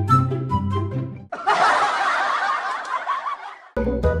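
Background music for the first second or so, then the music cuts out and a person laughs for about two seconds. The music comes back in just before the end.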